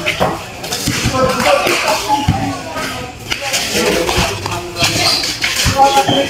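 Voices of players and onlookers talking and calling out, with a few short sharp thuds of a basketball on the concrete court.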